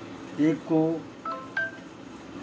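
Two short electronic beeps about a third of a second apart, each made of two steady pitches, like phone keypad tones.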